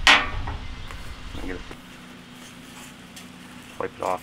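A single sharp metallic clank near the start, ringing briefly, then a few faint handling knocks over a low steady hum.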